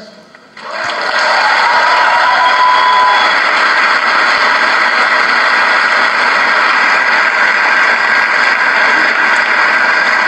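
A large audience applauding, the clapping setting in about a second in and holding steady, with one short held tone over it about two seconds in.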